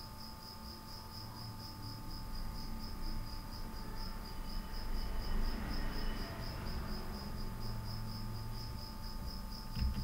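A steady high-pitched pulsing chirp, about five pulses a second, over a low background hum.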